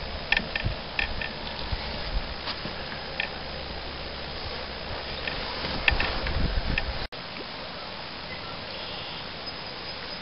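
A few small clicks and knocks from handling the caught fish and lure, over a steady outdoor hiss with a low rumble. The sound breaks off about seven seconds in and goes on as a quieter, steady hiss.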